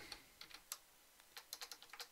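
Faint computer keyboard keystrokes: a few scattered taps, then a quick run of about half a dozen near the end.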